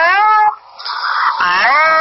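Two long, high, meow-like cries, each rising in pitch and then levelling off, about a second apart. They come over an old telephone recording with a narrow, muffled top end.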